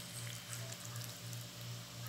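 Faint wet squelching of hands mixing cabbage through kimchi chili paste in a plastic bowl, over a steady low hum that pulses about three times a second.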